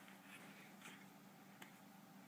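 Faint scratching and rustling of a cat's claws and fur against carpet as it rolls and kicks at a catnip toy, a few soft scrapes and a small click over a low steady hum.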